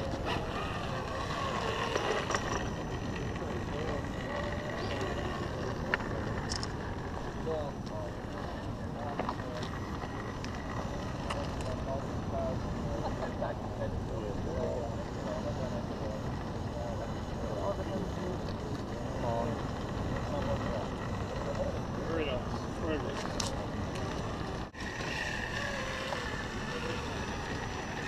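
Steady low outdoor rumble with faint voices in the background.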